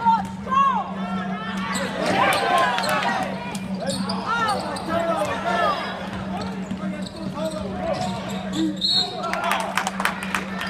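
Basketball dribbled on a hardwood gym floor during live play, with sneakers squeaking and players calling out over a steady low hum. A short, high whistle blast comes about nine seconds in, followed by several sharp knocks.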